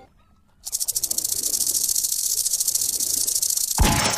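Online slot's fishing-reel sound effect as the fisherman symbol collects the fish cash values: after a brief silence, a fast, steady, high-pitched ratcheting rattle that grows slightly louder, cut off by a sharp hit just before the end.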